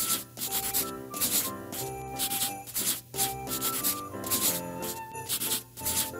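Instrumental music with a simple melody, under a repeated scratchy rubbing sound of a coloring pen stroking across paper, several strokes a second.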